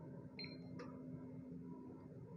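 Megger MIT510/2 insulation tester as its test is stopped: a faint press of the TEST button and a short high beep about half a second in, over a faint low steady hum.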